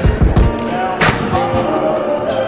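Background music with a heavy beat: deep bass thumps near the start and a sharp snare-like hit about a second in, over steady melodic tones.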